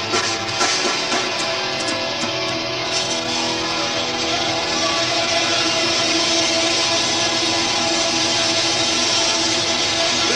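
A metal band playing live: distorted electric guitars over bass and drums. Sharp drum hits stand out in the first three seconds, then the sound settles into a steady, dense wall of guitar.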